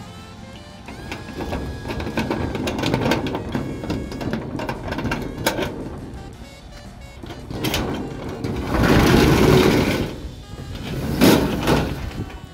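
A key working a disc padlock on a steel latch with small metallic clicks and rattles. Then a corrugated steel roll-up door rattles as it is pushed up, in a long loud stretch followed by a shorter one near the end.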